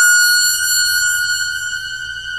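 A steady, high-pitched electronic tone held on one pitch with bright overtones, slowly fading: a synthesized sound effect for an eerie ending.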